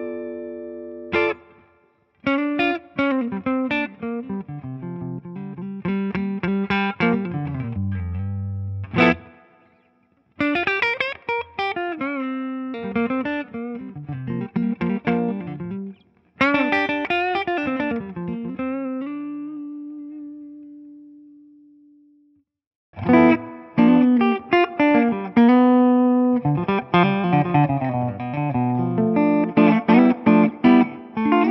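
Yamaha Revstar RSS02T electric guitar played through a close-miked 1965 Fender Deluxe Reverb amp, in short phrases of single notes and chords with brief pauses; one note is held and fades out about 19 to 22 seconds in. Up to then it plays on its neck pickup with the new wiring; from just before 23 seconds a fresh passage follows in the stock wiring's neck-plus-phase-shifted-bridge setting with the boost off.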